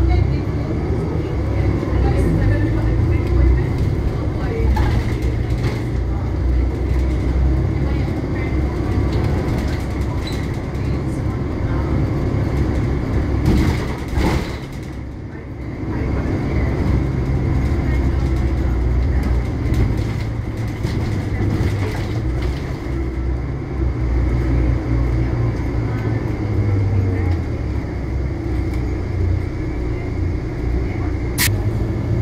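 Inside the cabin of a Volvo B12BLE diesel bus under way in traffic: the engine and road rumble run steadily, with a thin steady whine over them from the air-conditioning, which is noisy. The rumble drops briefly about halfway through, then picks up again.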